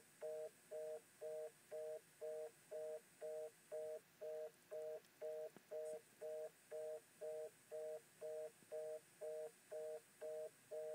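Telephone fast-busy (reorder) tone: a two-note electronic beep repeating evenly about twice a second.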